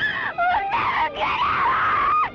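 A woman's long, high-pitched shrieks mixed with laughter, almost unbroken: playful squealing rather than terror.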